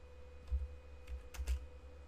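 Computer keyboard being typed on: a few scattered keystrokes as a short search entry is typed, over a low steady hum.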